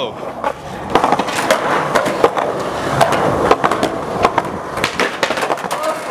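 Skateboard rolling over concrete, with many sharp, irregular clacks and knocks of the board and wheels striking the ground.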